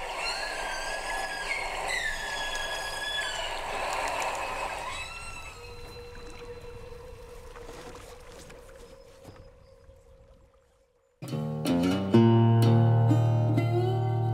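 Recorded humpback whale call played back: high wavering tones that glide up and down, fading away over the first ten seconds or so. After a brief silence, background music with sustained low notes comes in loudly and is the loudest sound near the end.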